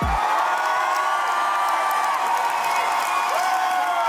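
A large concert crowd cheering and screaming, many voices holding long whoops at once in a steady wall of noise.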